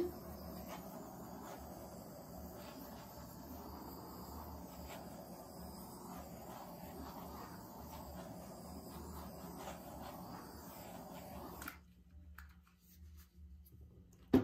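Small handheld torch running with a steady hiss as it is passed over wet acrylic pour paint to pop air bubbles; it shuts off suddenly near the end.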